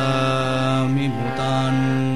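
Male voice singing a Sanskrit devotional verse in Carnatic bhajan style, drawing out one long held note over a steady drone; the voice breaks briefly about a second in and then carries on.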